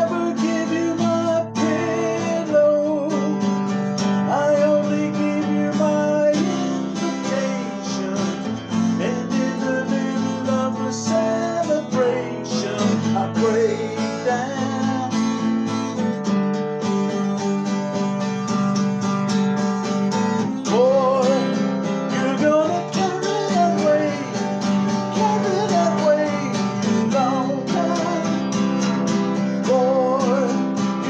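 A man singing along with a strummed all-mahogany acoustic guitar, the chords ringing steadily under a wavering sung melody.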